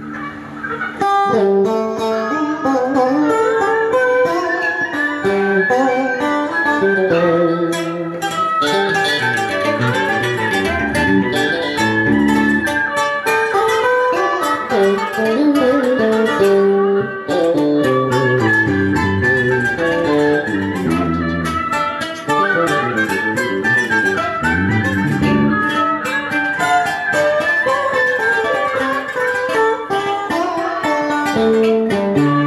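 Đờn ca tài tử music played on plucked strings, led by a guitar in fast runs of notes that bend in pitch.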